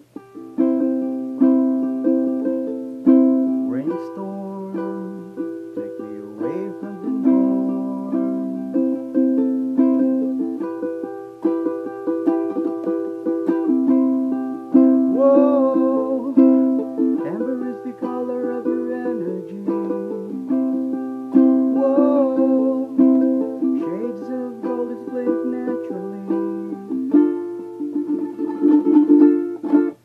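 Ukulele strummed continuously in a triplet strum pattern, playing a chord progression in which the chord changes every second or two.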